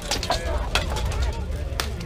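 Crowd of spectators talking and calling out, with three sharp knocks spread through the moment.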